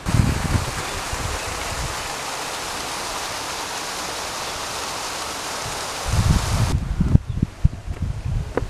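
Mountain stream cascading over rocks: a steady rushing of water that cuts off suddenly about two-thirds of the way through. Low rumbling bumps follow near the end.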